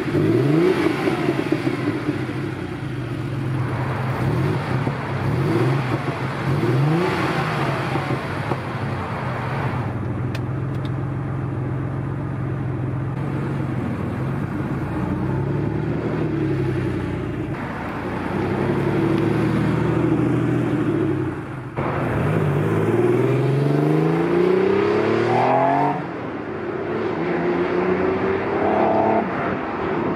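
Porsche 964 911 Turbo S2's turbocharged flat-six revving and accelerating, its pitch climbing in repeated rising sweeps and dropping back as it shifts up through the gears. The sound jumps abruptly between runs a few times.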